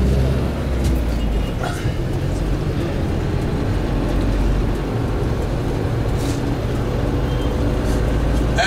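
Minibus engine and road noise heard from inside the cabin while driving: a steady low rumble, with a few faint knocks and rattles.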